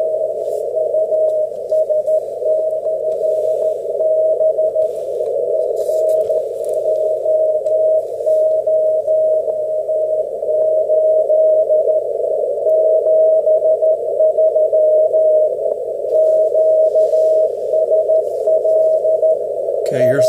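Weak Morse code (CW) signal received on an ICOM IC-7300 transceiver through a 450 Hz filter and heard from a speaker: a keyed tone just above a narrow band of hiss. The signal wavers, with a little chirp.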